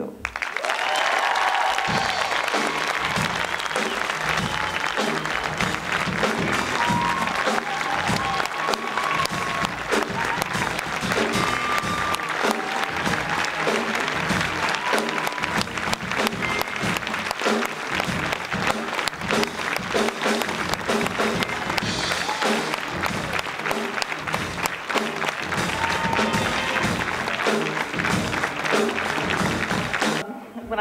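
A large audience applauding, starting suddenly and keeping up steadily, with instrumental walk-on music playing under the clapping.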